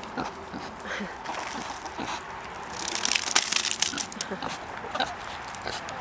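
A pig grunting and chomping on food scraps on the ground, with many small clicks and a stretch of dense crackling about three seconds in.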